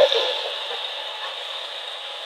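Steady background hiss that slowly grows fainter, after a brief vocal sound that ends right at the start.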